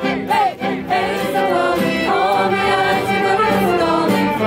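A group of voices singing a Polish song together in chorus, with acoustic guitar and violin accompaniment.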